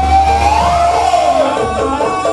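Live music of a Jaranan Buto ensemble: one high melody line slides up and then falls back over a low sustained tone, which stops about one and a half seconds in.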